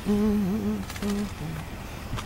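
A person humming close to the microphone: one held note with small wavers, then two shorter notes, the last a little lower.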